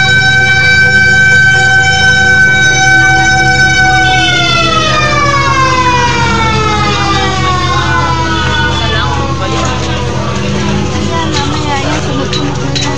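Fire truck siren holding one steady high tone, then winding down slowly in pitch from about four seconds in until near the end, over the low rumble of the truck's running engine.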